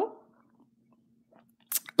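A quiet pause in speech with a faint steady hum and a few tiny ticks, ended near the end by a short mouth click and intake of breath before the next words.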